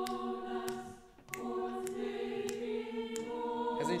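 Choir singing held chords in parts, heard through a video-call stream. The sound drops briefly about a second in for a breath, then the choir comes back in.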